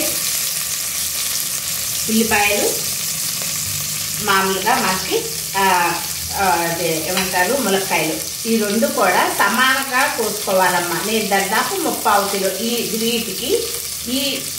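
Green chillies sizzling in hot oil in a stainless steel pressure cooker, a steady frying hiss, with a woman talking over it from about two seconds in.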